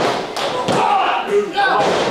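A few thuds and taps on a wrestling ring's canvas as a pinfall cover is made and the referee drops to the mat to count, with crowd voices in the hall.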